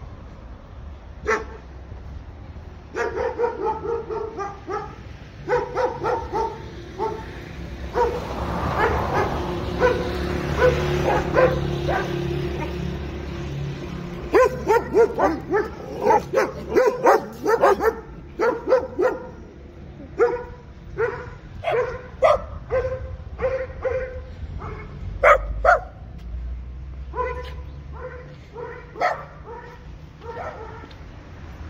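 Dog barking repeatedly in short runs of sharp barks through most of the stretch. A steady rushing noise swells under the barks in the middle.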